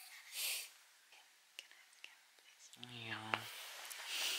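Soft whispering with a few faint clicks, and a brief low-pitched hum of a voice about three seconds in.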